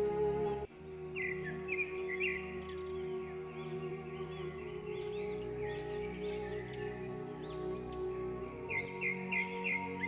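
Background music of long, held, layered tones, with bird chirps over it in quick little runs about a second in and again near the end. The music cuts out abruptly for an instant less than a second in, then starts again.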